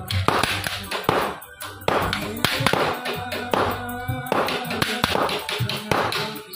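Small hammer striking a hand punch to chase a pattern into a copper sheet, sharp taps coming several a second at an uneven pace. Background music with a singing voice runs underneath.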